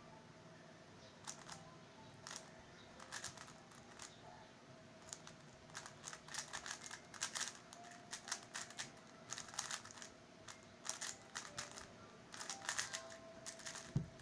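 MoFang Jiao Shi MF3RS stickerless 3x3 speed cube being turned fast during a timed solve: bursts of quick plastic clicking and clacking with short pauses between them, sparse at first and much denser from about five seconds in.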